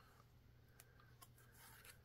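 Near silence, with the faint rustle and a few light ticks of a cardboard picture-book page being turned by hand.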